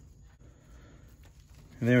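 Faint, scattered clicks of a steel spindle nut being turned by hand onto the threads of a front wheel spindle, over low room noise. A man starts speaking near the end.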